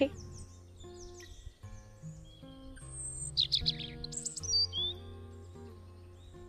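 Small birds chirping, with a cluster of quick calls about three to four and a half seconds in, over soft background music with long held notes.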